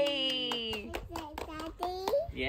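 A drawn-out cheer of "yay" tailing off, then a short run of quick hand claps, about half a dozen.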